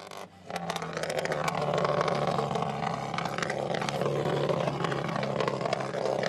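Rally car engine running steadily at a constant pitch, with scattered clicks and knocks over it. The car has rolled onto its side after a crash.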